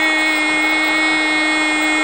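Spanish-language radio football commentator's drawn-out goal cry, "Goooool", held on one steady high note.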